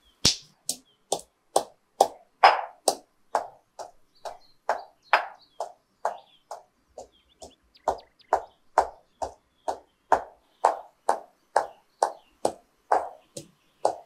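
Stone pestle pounding whole spices in a heavy stone mortar, a steady run of dull knocks at about two strokes a second.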